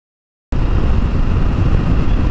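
Silence, then about half a second in a sudden loud, steady rumbling noise, strongest in the bass with a hiss above it.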